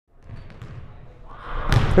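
Basketballs bouncing on a gym floor during practice, a run of dull thuds that gets louder and busier in the second half, with a sharper knock near the end.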